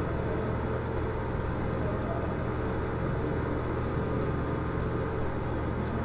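Steady low hum with a light hiss, unchanging throughout: background noise of the room or the recording, with no speech over it.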